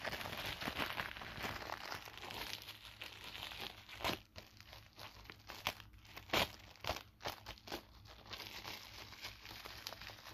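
Clear plastic film wrapping crinkling as it is torn open and pulled off a calendar by hand. Dense crinkling at first, then a handful of sharper separate crackles in the middle, then steady crinkling again near the end.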